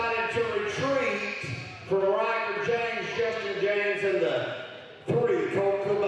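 A man's voice calling out in long, drawn-out phrases, with short pauses between them; the words are not made out.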